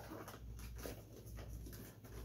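Faint scraping and tapping of a cardboard doll box as a child's hands work at it to get it open.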